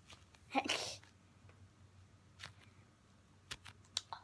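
A short, breathy vocal burst from a person about half a second in, followed by a few faint clicks.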